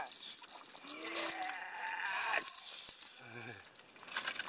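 Insects chirping in a rapid, high-pitched pulsing trill that breaks off shortly before the end.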